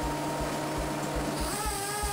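Microcable blowing machine running on compressed air, a steady mechanical whir with a hiss of air; its pitch steps up about one and a half seconds in.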